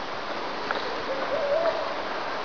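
Steady outdoor background noise, with a faint wavering tone that lasts under a second, starting about halfway through.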